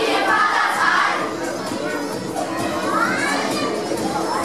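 A large group of children singing and calling out together over backing music, one voice sliding up in pitch about three seconds in.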